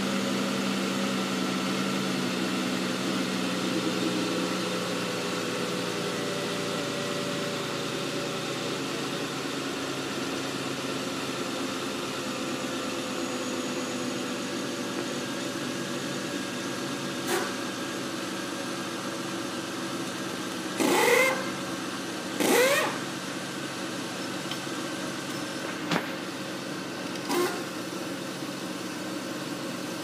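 Chevrolet 3.5-litre 3500 V6 engine idling steadily with the hood open. In the second half there are a few short clicks and two brief rising squeaks.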